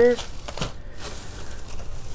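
Shredded-paper packing fill rustling and crinkling as a hand pushes through it in a cardboard box.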